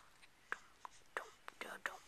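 A person whispering short rhythmic syllables, the 'dun dun dun' of a mock suspense tune. The syllables are faint and come faster toward the end.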